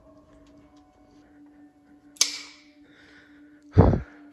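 A sudden sharp bang about two seconds in, with a short ringing tail, over a faint steady hum. Near the end a loud sigh blows on the microphone.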